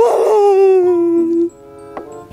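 A young man's long, drawn-out wail of despair, one sustained cry that slowly falls in pitch and breaks off after about a second and a half.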